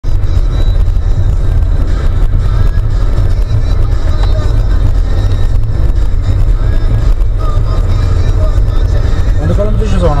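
Loud, steady low rumble of a car's engine and tyres on the road, heard from inside the moving car's cabin.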